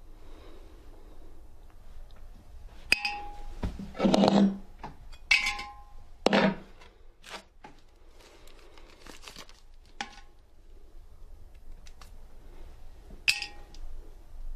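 A few short metallic dings with a brief ringing tone, about three seconds in, again at about five, and near the end, with two louder rustling knocks in between and faint handling noise.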